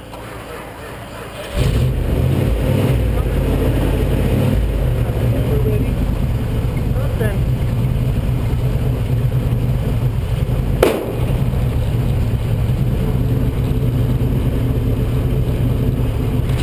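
A rally car's engine starting about a second and a half in, once a balky starter has finally turned it over, then running steadily at idle. A single sharp knock sounds about eleven seconds in.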